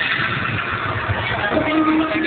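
The dance-routine music mix changes over. The electronic beat stops and a low, noisy stretch follows, then a held note begins about one and a half seconds in.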